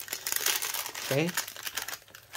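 Thin plastic wrapper of an Oreo snack pack crinkling, with a dense run of crackles, as it is opened and handled and a cookie is pulled out.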